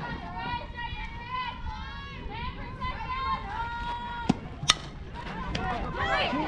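Players' voices calling and cheering throughout. About four and a half seconds in come two sharp cracks about half a second apart as the softball bat meets the pitched ball.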